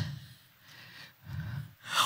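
Breathing close to a handheld microphone in a pause between words: faint at first, then a short, louder intake of breath about a second and a half in.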